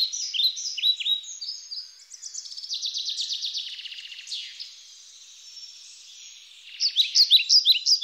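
Small birds chirping and singing: many short, high, down-slurred calls with a buzzy trill partway through, dying down briefly before loud chirping starts up again near the end.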